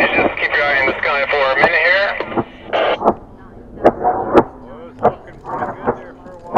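Raised, unclear voices of people calling out for the first two seconds, then scattered quieter voice fragments broken by a few sharp clicks.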